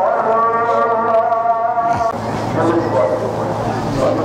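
A man's voice drawn out on one long held note for about two seconds, followed by a few shorter cries.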